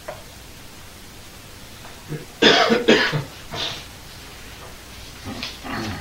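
A person coughing: a short run of coughs about two and a half seconds in, two loud ones and then a softer one, over a steady low hiss.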